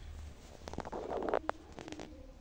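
Soft rustling with a quick run of light clicks and one sharper click about three quarters of a second from the end, like a book or papers being handled.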